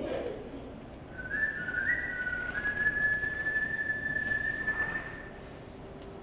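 A person whistling: a few short notes stepping upward, then one long held note that rises slightly before stopping about five seconds in.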